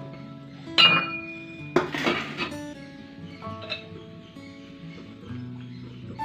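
Background music with sustained notes, over which metal kitchenware clinks twice: once sharply about a second in, then a longer rattle of clinks around two seconds in, as a steel bowl and utensils are handled.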